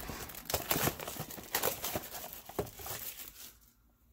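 Plastic shrink wrap being torn and peeled off a boxed pack of trading cards, crinkling in quick irregular crackles that die away shortly before the end.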